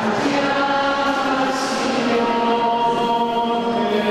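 A group of voices singing a slow hymn together, holding long notes, in a reverberant church.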